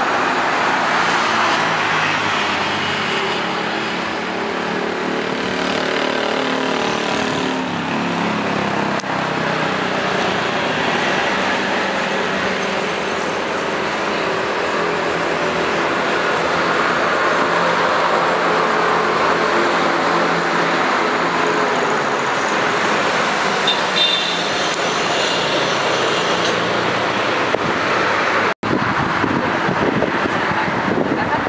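Steady road traffic noise, with a passing vehicle's engine note rising in pitch about eight seconds in. The sound cuts out briefly near the end.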